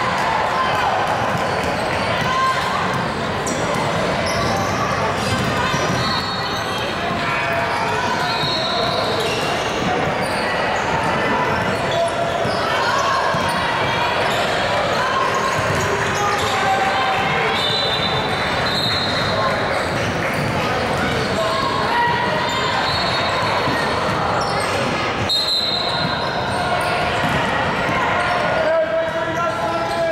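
Basketball game play echoing in a large gym: a ball bouncing on the hardwood floor and distant voices of players and onlookers. There are bursts of short, high-pitched squeaks from sneakers on the court several times.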